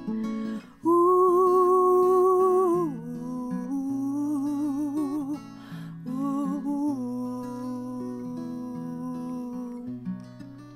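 A woman singing long, held wordless notes with vibrato over a strummed steel-string acoustic guitar; the loudest held note comes about a second in and lasts about two seconds.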